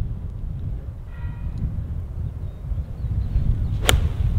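Wind rumbling on the microphone, then, near the end, a single sharp click of a golf club striking the ball on a full approach shot.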